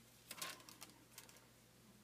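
A sheet of glassine paper crackling as it is handled: a cluster of crisp crackles about a third of a second in, then a couple of fainter ones.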